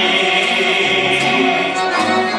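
Live amplified music: a man singing into a microphone, accompanied by violin and keyboard, with long held notes.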